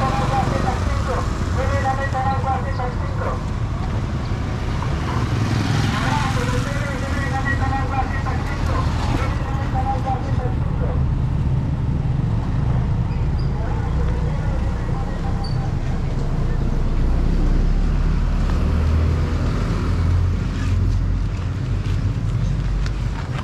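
Street traffic: a motorcycle tricycle passes at the start, over a steady low rumble of road noise that swells between about 17 and 21 seconds. Voices of passers-by are heard at times.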